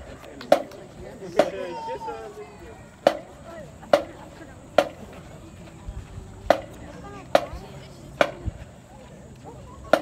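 Sharp percussion clicks keeping the marching band's tempo, about one every 0.85 s in groups of three with the fourth beat left silent.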